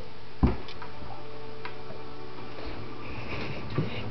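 Kitchen drawers being handled by a toddler: one knock about half a second in, then a few light clicks, over a steady low hum.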